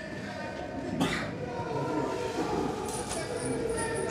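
Indistinct, mumbled male voice with no clear words, with a short noisy burst about a second in.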